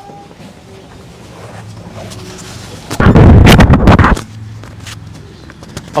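Low steady room hum, broken about three seconds in by a loud burst of rough noise lasting about a second.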